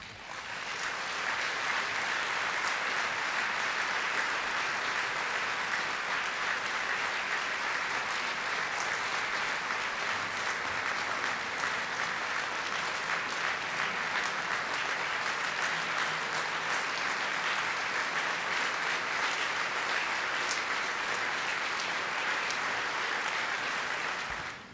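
Large audience applauding in a long ovation. It builds within the first second, holds steady with dense clapping, and stops near the end.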